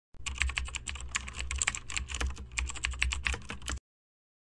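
Keyboard typing sound effect: a rapid, uneven run of key clicks over a low hum, cutting off suddenly near the end.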